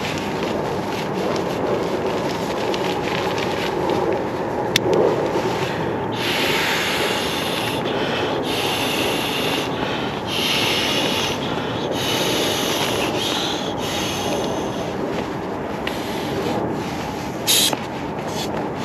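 Nylon fabric rustling and rubbing close to the microphone as a padded camping item is handled. A run of short hissing bursts, each about a second long, comes in the middle, and a brief sharp rustle comes near the end.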